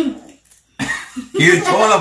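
Voices chanting a short repeated rhyme: a brief phrase right at the start, a pause, then a longer stretch of chanting from about the middle on.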